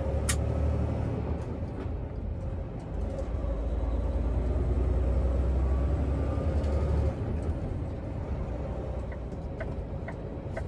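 Semi-truck's diesel engine droning inside the cab while driving, a heavy low rumble that eases off about seven seconds in. There is a sharp click just after the start, and a few light ticks near the end, like a turn signal.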